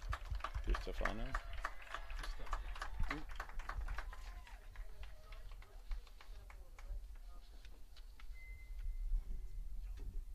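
Scattered clapping from a crowd of spectators, densest at first and thinning out after a few seconds, with faint crowd voices underneath.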